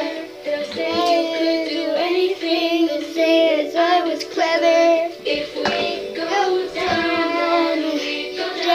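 A young girl singing a pop song, with steady backing music under her voice.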